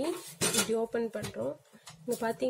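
Metal latch of a Hy-tec HYBB-04 briefcase charcoal grill clicking open about half a second in, followed by light metallic clatter of the steel case and wire grate as the lid is swung open.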